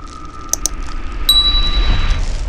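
Subscribe-button animation sound effects: two quick mouse clicks about half a second in, then a bright notification-bell ding that rings on, over a low rumble that swells towards the end.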